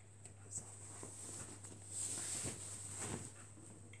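Faint rustling of a sweatshirt being pulled off over the head, fabric brushing and shifting, over a steady low hum.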